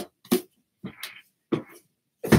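A book being handled: several brief rustling and soft knocking sounds of pages and cover.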